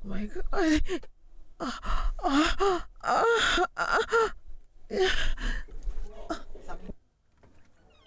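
A woman's breathy moans, sighs and gasps, a series of short vocalisations one after another, fading out near the end.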